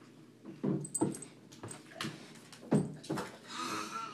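Great Dane making a series of short, low vocal sounds at the bathtub's edge, about six in irregular succession, the loudest near the middle.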